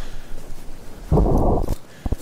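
A loud, low boom lasting a little over half a second, starting about a second in, deep and muffled with no high end.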